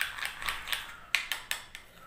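A spoon clicking and scraping against a bowl while stirring a thick gram flour paste, a quick run of light clicks about five a second that thins out near the end.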